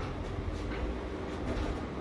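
Motorized bioclimatic pergola roof, its drive running steadily as the aluminium louvres rotate. It gives a continuous low mechanical rumble.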